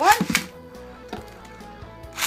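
Beyblade spinning tops launched by a string ripcord launcher into a clear plastic stadium: a quick rip and a clatter of the metal tops landing in the first half second, then the tops spinning with an occasional faint click.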